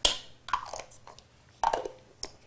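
Food-preparation handling noises: a plastic measuring spoon tapped and shaken over a plastic mixing bowl to drop in minced onion, then plastic measuring cups knocked on a stone countertop. There is a sharp knock at the start and two softer ones after it, the last about a second and a half in.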